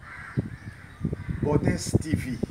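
A man's hoarse, raspy voice calling out short non-word exclamations, harsh enough to sound like cawing.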